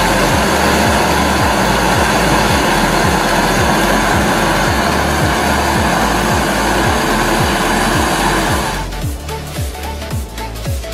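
Gas torch flame hissing steadily, heating a knife blade, with music underneath that has a kick drum about twice a second. The torch noise cuts off about nine seconds in, leaving the music.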